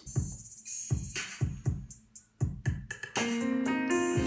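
A drum-machine beat of kick drum and hi-hat plays alone, then about three seconds in sustained chords on a digital keyboard come in over it. This is the start of an R&B progression of A flat major 7, C minor 7, G minor 7 and F minor 7, with the left hand on the chord roots.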